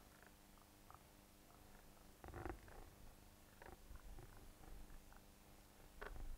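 Near silence: room tone with a faint steady low hum and a few faint brief sounds, the clearest about two and a half seconds in.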